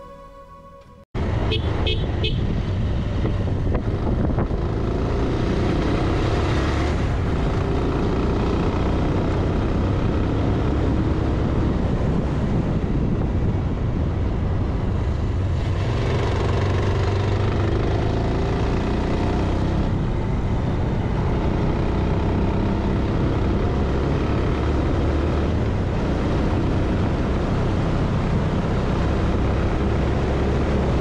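After a quiet second, motorcycle riding sound cuts in: the engine runs steadily at road speed under a steady rush of wind on the bike-mounted camera's microphone.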